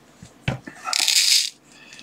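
A small plastic bag of M2 screws being opened with scissors: a sharp click about half a second in, then a brief crisp rustle with the tiny screws clinking.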